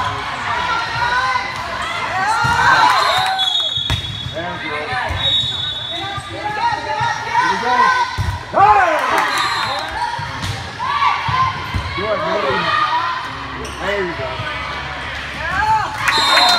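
Indoor volleyball rally on a hard sports-hall court: athletic shoes squeaking repeatedly as players move, and the ball being struck, with a sharp hit about eight and a half seconds in as a player attacks at the net. Voices call out throughout, echoing in the large hall.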